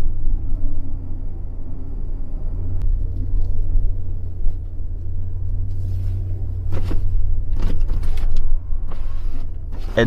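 A car's low, steady rumble, with a few brief knocks about seven to eight seconds in.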